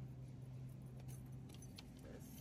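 A few faint light metallic jingles and clicks, over a steady low hum.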